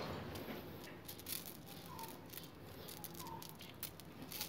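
Glass marbles clicking and rattling faintly against each other as fingers spread and settle them in a layer, with a steady scatter of small ticks.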